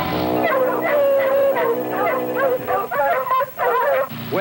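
A pack of cartoon dogs yelping and howling in quick, overlapping calls over the orchestral score, starting about half a second in.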